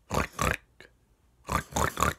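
A man doing a pig impression with his voice: two quick pairs of rough, unpitched snorts about a second and a half apart.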